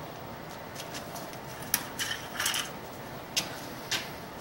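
A few small clicks and knocks and a short scraping rub as things are handled on a wooden workbench, starting about two seconds in, with a last click near the end.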